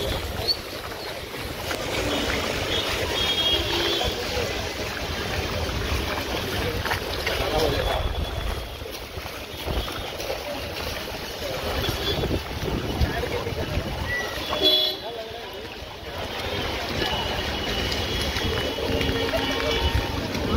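Footsteps wading and splashing through ankle-deep floodwater on a street, with people's voices around.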